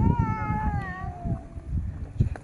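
A single long meow-like call, lasting about a second and a half and sliding down in pitch, over a low rumbling noise.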